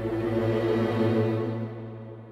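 Background drama score of sustained, held tones that swell and then fade toward the end.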